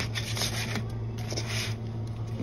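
Handling noise: something rubbing and scraping against the phone's microphone in several short, irregular strokes, over a steady low hum.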